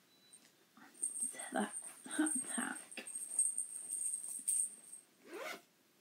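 Cloth and yarn rustling as a sock on double-pointed needles is handled and put into a red fabric project bag, a run of short scrapes through the middle, with some low murmuring.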